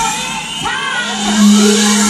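Live rock band at a drop in the song: the drums and bass cut out, leaving a bending vocal line and then one held low note, with a faint rising sweep above.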